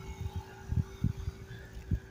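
Street background with traffic: a steady hum under a faint wash of noise, broken by a few soft low thumps.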